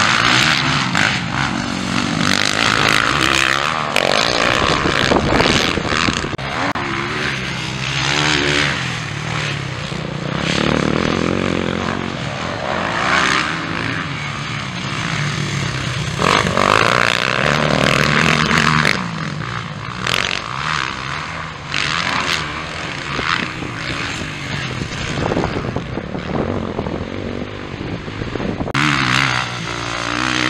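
Motocross bikes racing on a dirt track, their engines revving up and easing off again and again as the riders go by, swelling and fading in loudness.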